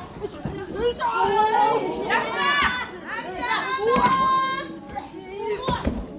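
High-pitched women's shouts and yells in a pro wrestling ring, several voices overlapping, with a sharp thud just before the end.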